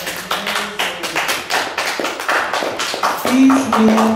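A small audience clapping as a song ends, with a voice starting to speak near the end.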